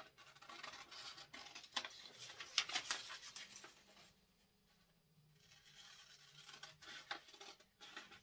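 Scissors cutting along the lines of a sheet of thin printer paper: a string of crisp snips and paper rustles. They stop briefly about four seconds in, then go on more faintly.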